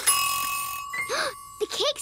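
Oven timer ping signalling that the cake is done: one bright bell-like ding at the start, its tone ringing on for about a second and a half.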